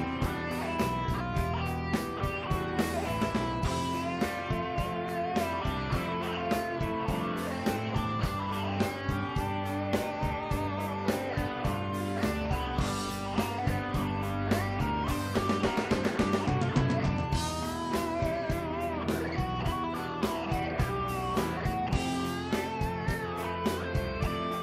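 Live rock band playing: electric guitars over bass and a steady drum beat, with keyboards filling out the sound.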